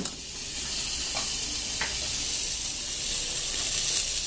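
Rice sizzling as it fries in fat in a pot, a steady hiss, at the stage where it is toasted before the water goes in. Two faint light ticks come about one and two seconds in.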